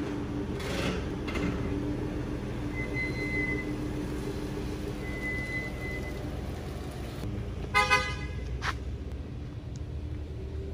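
A vehicle engine idling steadily, then a brief car-horn toot about eight seconds in, a goodbye honk.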